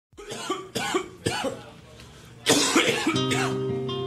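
Opening of a hip-hop track: a few sharp coughs in the first second and a half, then a loud voice about two and a half seconds in, and a held guitar chord that comes in about three seconds in and rings on.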